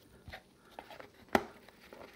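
A clear plastic lid pressed down onto a plastic to-go container: a few light plastic clicks, then one sharp snap a little past halfway as the lid seats on the rim.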